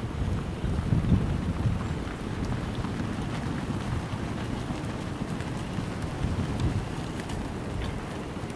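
Wind buffeting the microphone: a low, uneven rumble, strongest about a second in.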